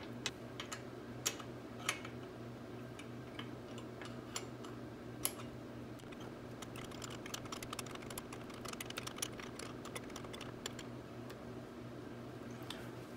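Light metallic clicks and taps of a hand wrench being fitted onto and worked on the ATV's rear brake caliper mounting bolts, scattered at first, then a quicker run of small ticks past the middle.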